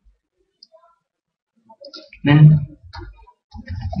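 A few light computer keyboard clicks as code is deleted in the editor, with a short spoken word between them.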